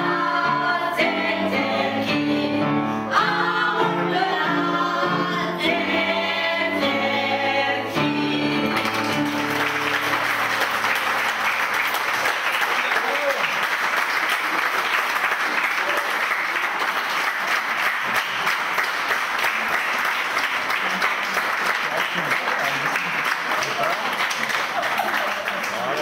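A group of voices singing a song together, ending about nine seconds in, followed by sustained audience applause.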